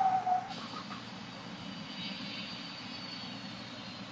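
Steady low rumbling background noise with a faint high whine that slowly falls in pitch in the second half, like a distant engine or a fan running. A brief steady hum sounds during the first half second.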